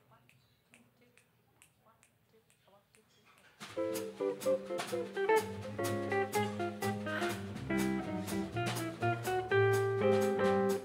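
Near quiet with faint clicks, then about three and a half seconds in a jazz band starts playing: guitar chords over upright bass and drums with a steady cymbal beat. This is the instrumental intro to the song.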